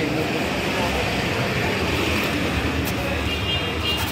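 Town street traffic noise: a steady hum of engines and road noise, with people's voices mixed in.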